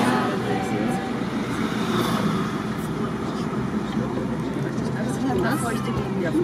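Car driving, heard from inside the cabin: a steady drone of engine and road noise.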